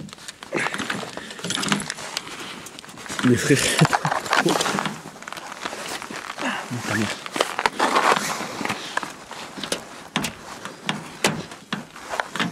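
Handles of a car frozen shut being tugged and clicking repeatedly as the doors refuse to open, with grunts of effort and footsteps.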